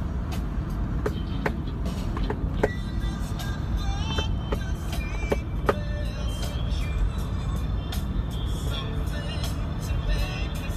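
Steady low rumble of a moving van heard from inside the cabin, with music playing and occasional sharp clicks and knocks.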